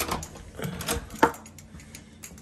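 Metal door hardware clicking as a room door is unlocked and opened: a key turning in the lock and the lever handle and latch working. A handful of sharp clicks, the loudest at the start and about a second and a quarter in.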